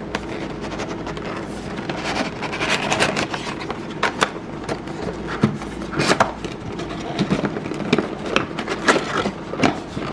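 Cardboard box being handled and worked open by hand: irregular scraping and rubbing against the cardboard, with sharp taps and clicks throughout.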